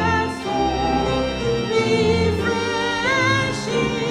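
A hymn sung by a woman's voice with a wide vibrato, to organ accompaniment holding sustained chords.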